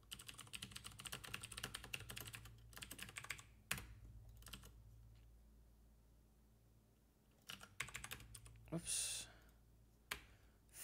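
Typing on a computer keyboard in quick runs of keystrokes, with one harder key strike about four seconds in and a few quiet seconds before the typing picks up again. There is a short hiss near the end.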